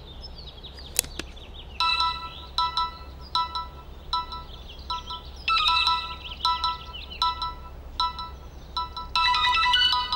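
Smartphone ringing with an incoming call: a ringtone of short electronic chiming notes repeating in quick phrases. It starts about two seconds in and runs longer and denser near the end.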